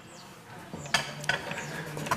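A couple of knocks and scuffs about a second in, as a person climbs up onto a tractor.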